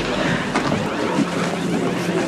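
A loud, steady rushing noise, like wind or spraying water.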